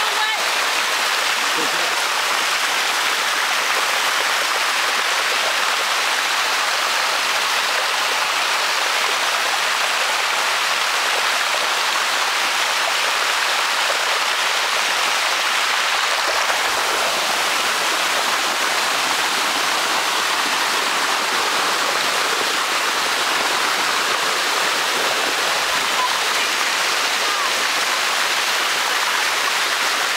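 Shallow water rushing steadily down a limestone cascade waterfall, an even, unbroken roar of flowing water.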